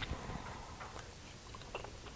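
Faint sounds of a person chewing a mouthful of soft, creamy pasta casserole, with a few small clicks.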